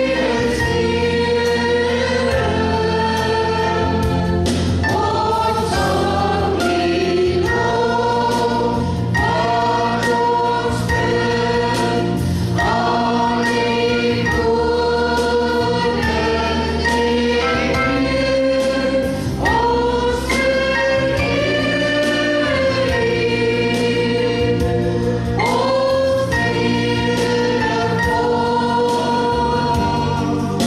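Live worship band playing an Afrikaans praise song: several voices singing together in long held notes over electric guitar, bass and a steady drum beat.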